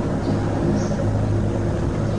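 A steady low hum in the background, with a few fainter steady tones above it.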